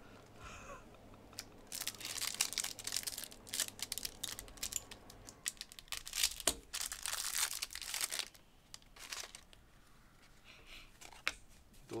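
Wrapper of a Panini Chronicles soccer card pack being torn open and crinkled, in two main bursts of rustling, followed by fainter handling of the cards.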